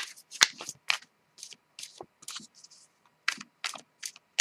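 A tarot deck (Osho Zen Tarot) being shuffled by hand: a quick, irregular run of crisp clicks and slaps as the cards strike one another, about three a second.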